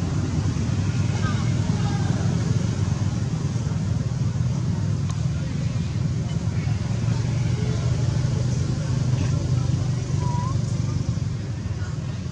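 Steady low outdoor rumble, with a few faint short chirps above it, one about ten seconds in.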